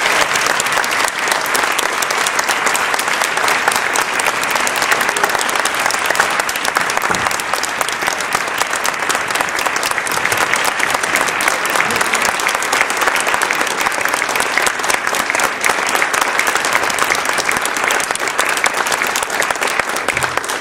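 An audience applauding: steady, dense clapping of many hands that eases slightly near the end.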